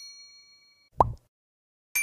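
Animated subscribe-button sound effects: a chime rings out and fades, a short pop with a quickly falling pitch comes about a second in, and a bright bell ding strikes near the end.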